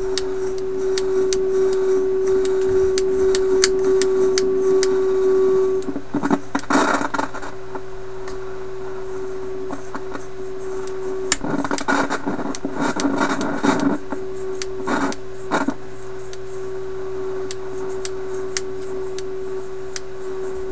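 Philips 922 vacuum tube radio's loudspeaker giving a steady mid-pitched tone, interrupted by bursts of crackling static about six seconds in and again around twelve to fourteen seconds, with scattered clicks throughout.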